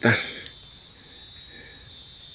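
Steady, high-pitched chorus of insects trilling without a break.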